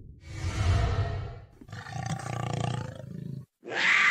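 Big-cat roar sound effect, as a cougar or lion roar, played over a logo: two long roars, then a third beginning near the end that falls in pitch.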